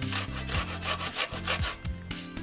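Lemon scraped against the fine teeth of a metal box grater to grate its zest, in quick repeated scraping strokes, several a second, easing off near the end.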